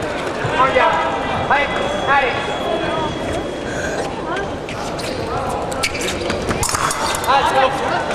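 Fencers' shoes squeaking in short high glides and feet striking the piste during footwork and an attack, with a cluster of sharp clicks about six to seven seconds in. Voices carry in the hall behind.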